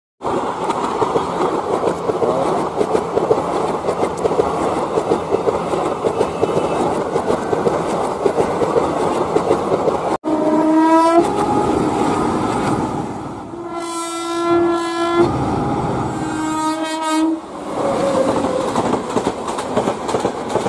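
Passenger train running past, a steady rumble and clatter of wheels on the track. About halfway through the sound cuts, and then a train horn sounds several separate blasts, the longest about a second and a half.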